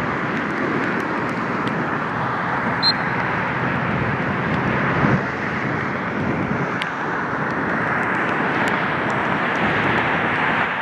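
Steady rushing outdoor background noise, with a few faint ticks and a brief high chirp about three seconds in.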